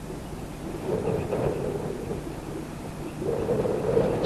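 A low, rumbling sound like distant thunder that swells about a second in and again near the end.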